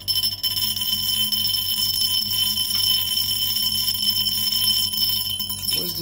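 A piece of steel nail spun by a homemade magnetic stirrer, rattling against the bottom of a three-litre glass jar: a steady high-pitched ringing jingle, over a low steady hum from the stirrer.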